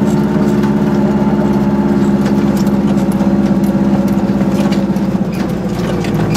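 Goggomobil's small two-stroke twin-cylinder engine running steadily at low speed as the car drives along, heard from inside the cabin.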